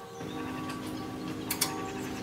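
A small mechanism clicking over a steady hum, with two sharp clicks close together about one and a half seconds in.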